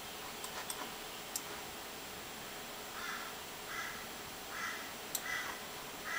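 Faint steady room hiss with a few soft clicks in the first second or so, then four short harsh calls about 0.8 s apart in the second half, like a bird cawing in the background.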